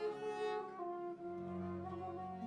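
Early-music trio of wooden transverse flute, lute and bowed viola da gamba playing held notes; the flute drops out about half a second in, leaving the viol and lute sounding.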